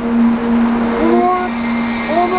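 A steady low hum, with a woman's voice calling out a long drawn-out syllable about a second in.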